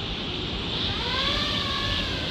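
A 5-inch FPV quadcopter's brushless motors (T-Motor F60 Pro IV, 2550 kV) spinning T-Motor 5143 props up for takeoff. The whine rises in pitch about a second in and then holds steady over a broad rushing of prop wash.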